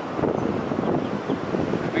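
Wind buffeting the microphone: a steady, rough low rumble with no distinct events.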